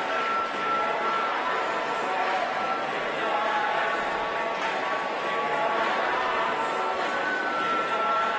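Ice hockey arena crowd noise: a steady, even mass of voices from the stands.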